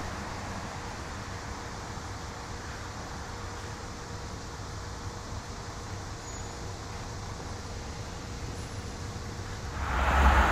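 Diesel locomotive creeping slowly at low throttle some distance off, a steady low rumble with a faint constant whine running through it.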